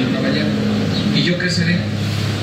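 A man speaking, over a steady low hum.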